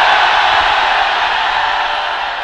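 Large congregation cheering and shouting together, a dense wash of many voices that slowly dies down.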